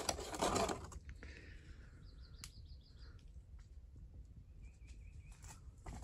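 A clear plastic humidity dome is lifted off a seed-starting tray, with a brief plastic rustle in the first second. Then comes quiet outdoor ambience, with a bird's rapid chirping trill about two seconds in and a short whistled call near the end.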